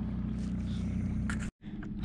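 Old Town Predator MK kayak's Minn Kota electric trolling motor running with a steady low hum, cutting off suddenly about one and a half seconds in.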